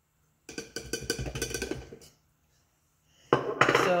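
Small handheld electric coffee grinder holding ground flax seed and cinnamon stick, a rattling burst of about a second and a half. A sharp click comes near the end as the grinder is opened.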